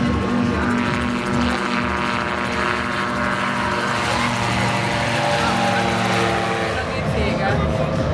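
Gyrocopter's piston engine and pusher propeller running at takeoff power as it lifts off and climbs away, a steady droning tone whose pitch drops near the end as it passes and heads off.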